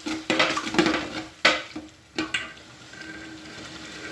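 Metal spoon stirring a wet curry in an aluminium pot: a handful of sharp scrapes and clinks against the pot in the first two and a half seconds, then quieter.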